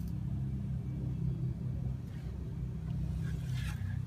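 An engine idling: a steady low rumble.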